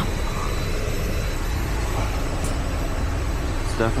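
Steady drone and rush of a powered-up Bombardier Global 7500's running systems and airflow, heard from inside its electronic equipment bay. A few faint, steady high whines sit over it.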